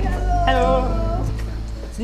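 A voice calling "Hello! Hello!" in a high, drawn-out sing-song greeting during the first second or so, over steady background music.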